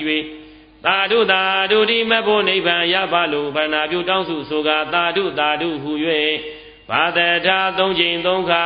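Buddhist chanting by a single voice: a melodic recitation in long phrases, with two short pauses for breath, one just after the start and one about six seconds in.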